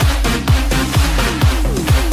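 Electro big room dance track: a steady four-on-the-floor kick drum, about two beats a second, with short falling synth notes repeating between the beats.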